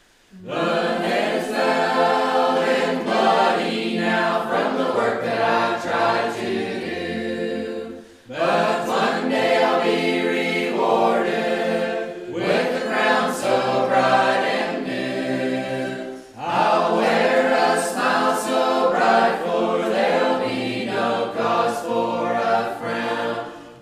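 A Mennonite church choir sings a gospel hymn a cappella, with no instruments. The singing comes in phrases, with short breaks about every four seconds. It starts after a brief moment of quiet at the very beginning.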